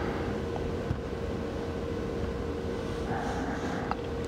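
Room tone: steady background hiss with a faint steady hum, and one faint tap about a second in.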